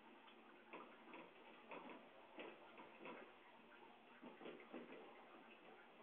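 Near silence with faint, irregular small clicks and rustles.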